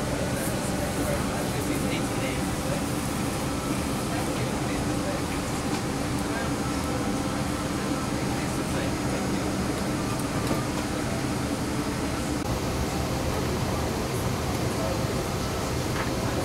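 Steady background noise inside a parked Boeing 777-300ER airliner cabin, the cabin air conditioning running, with indistinct passenger voices in the background.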